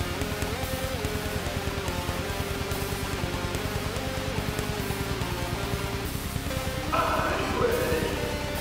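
Black metal track: programmed drums with a fast, steady kick-drum pulse under a slow-moving guitar and synth melody. A harsh vocal comes in about seven seconds in.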